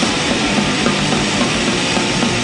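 Crust/d-beat hardcore punk recording playing: distorted guitar, distorted bass and drums in a dense, steady wall of sound.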